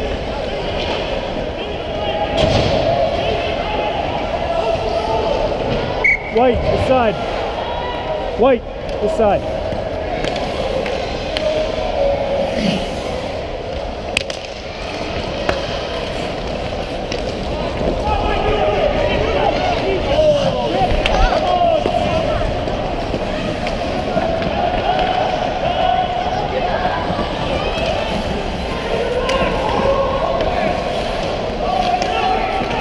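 Youth ice hockey game in play: sticks and puck clacking on the ice and boards, with shouting voices echoing around the rink.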